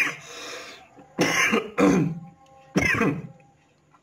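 A man clearing his throat: three short, rough bursts about a second apart.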